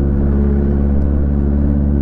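Honda CBR650 inline-four motorcycle engine running at low, steady revs as the bike rolls slowly.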